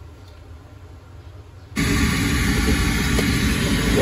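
Steady FM radio static hiss from a Sony DAV-DZ810 home theatre's speakers, heavy in the bass, cutting in suddenly and loudly a little under two seconds in after a faint low hum. It is the sign that the unit's sound output is working again.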